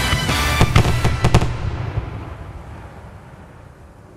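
Fireworks going off over music, with a cluster of sharp bangs about a second in, then the whole sound fading away steadily over the last couple of seconds.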